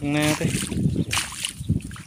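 Irregular sloshing and splashing of footsteps through shallow floodwater and wet grass at a rice-field edge, after a short voice call at the start.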